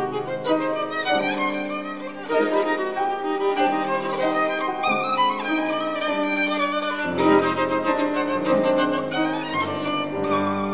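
Violin playing a Chassidic-style melody with vibrato, accompanied by piano, which adds deep bass notes about seven seconds in.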